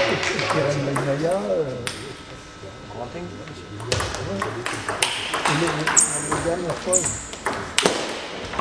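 Table tennis rally: the ball clicking sharply off the rackets and the table in a quick back-and-forth, starting about halfway through, with voices in the hall.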